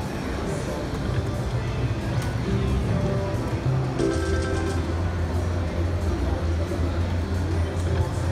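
Slot machine electronic music and reel-spin sound effects over casino-floor chatter, with a new jingle of steady tones and quick ticking starting about four seconds in.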